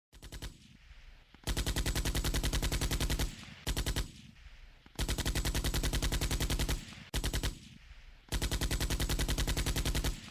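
Automatic gunfire in six bursts, alternating short and long: a rapid, even string of shots in each, the long bursts lasting about two seconds.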